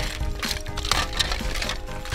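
Hard plastic potato head toy parts clicking and clattering as a hand rummages through a pile of them, several separate clicks, over background music.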